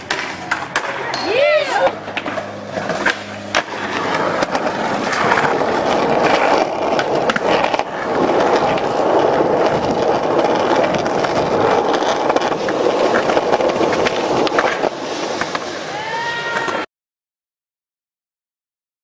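Skateboard wheels rolling over concrete and pavement with a steady rolling noise, after a few seconds of board clacks and knocks mixed with short shouted voices. The sound cuts off abruptly near the end.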